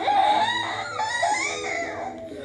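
A woman letting out a long, high-pitched wordless shout. Her voice wavers up and down in pitch over several pushes and tails off toward the end.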